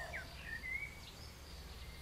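Faint bird chirps: a few short rising and falling whistles in the first second, over a low steady hum.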